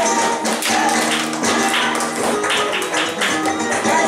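Flamenco bulería music, pitched string and voice-like lines under a dense run of sharp percussive taps.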